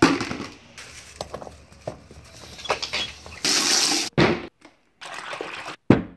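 Water sloshing and splashing in a plastic bucket as skateboard wheels are washed, with a louder rush of water a little over halfway through. It comes in short cut-together bits with sudden brief gaps near the end.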